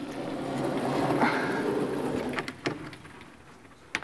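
A heavy vertically sliding chalkboard panel being pushed up with a long pole. The slide swells and fades over about two and a half seconds, followed by a couple of sharp knocks as it settles.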